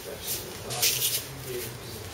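Indistinct murmur of several people talking at a distance in a room. A brief rustling noise comes about a second in.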